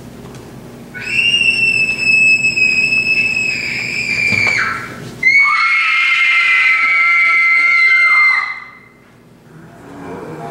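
Two long, high-pitched screams, each about three seconds; the first drops in pitch as it ends.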